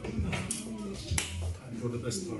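Two sharp snaps, about two thirds of a second apart, over background music with a voice in it.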